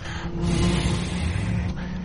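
Helicopter sound effect of Airwolf played back: a steady mechanical whir with a low, even hum that cuts in abruptly.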